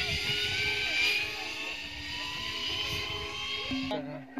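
Zipline trolley pulleys rolling down a steel cable under a rider: a thin whine that slowly rises in pitch as the trolley gathers speed, over a low rumbling noise.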